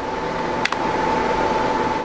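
Steady hiss with a thin, steady hum tone running through it and one brief click a little under a second in; it cuts off suddenly at the end.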